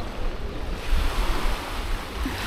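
Small waves washing on a beach, with wind buffeting the microphone as a low rumble.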